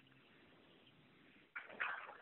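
Near silence on a telephone conference line, then near the end a faint, brief voice-like sound over the phone connection as the questioner's line opens.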